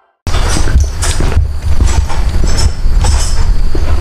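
Wind rumbling on the microphone outdoors, with scattered knocks and clicks of handling noise; it starts abruptly about a quarter second in after a moment of silence.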